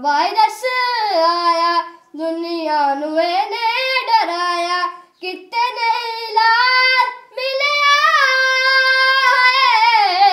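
A boy singing solo and unaccompanied, in four long held phrases with short breaks for breath between them.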